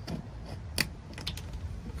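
Small metal lock catch on a wooden cabinet being worked with a small screwdriver and clicked shut: a handful of sharp metal clicks, the loudest a little under a second in.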